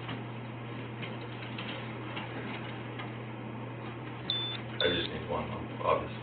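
A steady low hum with a few faint clicks, then two short high-pitched beeps about four and a half seconds in, followed by brief muffled voices near the end.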